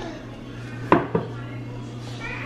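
Two sharp clacks of kitchenware handled at a sink counter, about a quarter second apart, as a plastic plate is picked up, over a steady low hum.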